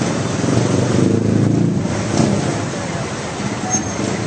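Steady rumble of a moving vehicle, with no sharp events.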